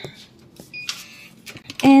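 A single short electronic beep, a steady high tone, about a second in, over faint handling noise.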